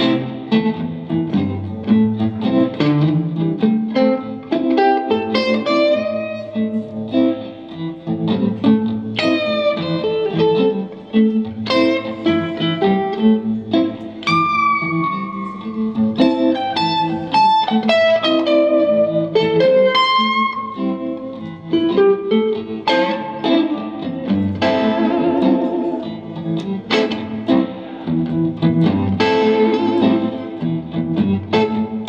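Two guitars, at least one of them electric, played together live in a fast weave of plucked single-note lines and chords, with some long notes bent or slid in pitch.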